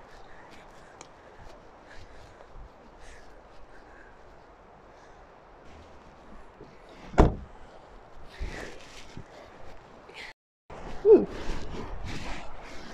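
Faint rustling and handling noise as someone climbs out of a car, then a car door shut with a single loud thump about seven seconds in. Near the end wind buffets the microphone.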